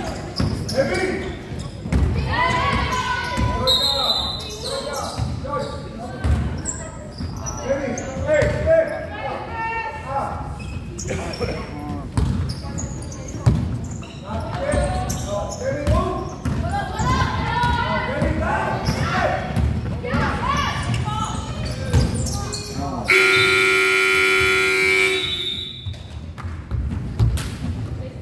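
Basketball bouncing and sneakers on a hardwood court, with indistinct calls from players in a large echoing hall. Near the end a scoreboard buzzer sounds one steady, loud tone of about three seconds, stopping play.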